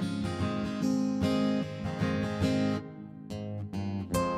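Acoustic guitars strummed and picked in an instrumental passage with no singing, dropping quieter for about a second near the end before the playing picks up again.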